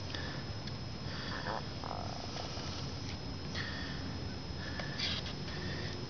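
A plastic card stirring water in an aluminium tin: soft swishing over a steady low background noise, with a few brief faint squeaks and light ticks.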